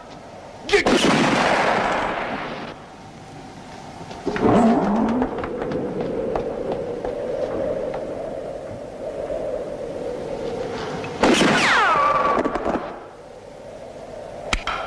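Gunshots on a western film soundtrack: a loud shot about a second in with a long echoing tail, another report around four seconds, and a third loud shot near the end followed by a falling whine like a ricochet, with a steady held tone between them.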